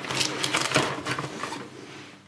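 A camera charger and its cable being pushed into a padded fabric compartment of a camera bag: a quick run of small clicks, knocks and fabric rustles that thins out after about a second and a half.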